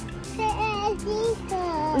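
A small child's high voice, short and broken, over background music with steady low tones.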